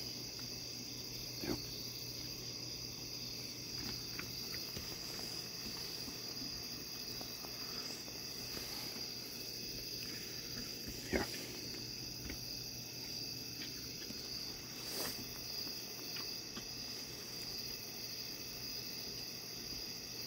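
A steady, high-pitched chorus of crickets, with a few brief soft clicks over it.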